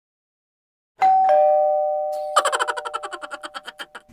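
Two-note ding-dong chime, a high note then a lower one, held and ringing. It is followed by a fast run of bell strikes, about nine a second, dying away.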